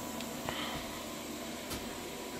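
Steady low background hum and hiss of a small room, with two faint clicks about half a second in and near the end.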